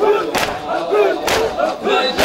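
A crowd of mourners doing matam: many hands striking chests together in unison, twice, about a second apart, with many men's voices chanting the noha between strikes.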